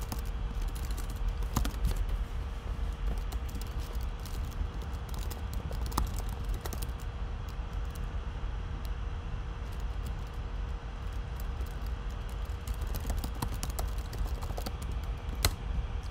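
Typing on a computer keyboard: irregular runs of key clicks with short pauses, over a faint steady hum.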